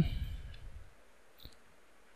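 A single computer mouse click about one and a half seconds in, against quiet room tone, as the voice's low tail fades away.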